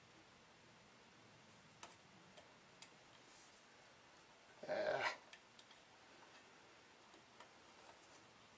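Quiet room with a few faint clicks of hands pressing tape onto a tennis racket's frame, and one brief louder sound lasting about half a second a little past halfway through.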